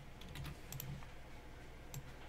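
Faint typing on a computer keyboard: a few scattered key clicks.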